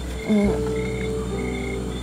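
Night-time frog chorus with short, evenly repeated high calls over steady low tones, and one brief, louder low sound about a third of a second in.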